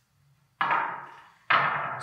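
Supercharger base plate set down on the workbench: two sudden knocks about a second apart, each ringing briefly.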